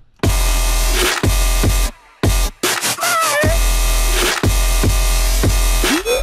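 Electronic dance remix playing back from a music production session: heavy sustained sub bass under repeated drum hits, a short break about two seconds in, then a lead that slides in pitch around three seconds.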